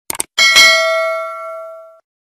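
Two quick mouse clicks, then a bright bell ding that rings on and slowly fades. This is the sound effect of a subscribe-and-notification-bell animation.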